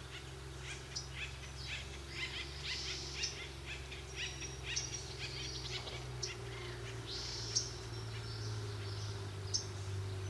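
Wild songbirds singing and calling: many short, high chirps and trills from several birds overlapping, with a steady low hum underneath.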